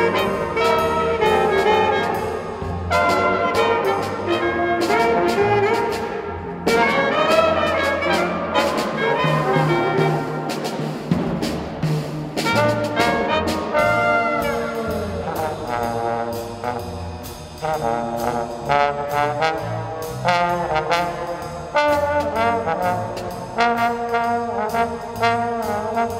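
Student jazz band playing: trombone, flute and other horns over a drum kit, with steady cymbal strokes keeping time.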